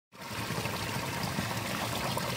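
Irrigation water in a rice-field ditch pouring over a small drop into a pool, a steady splashing rush of falling water.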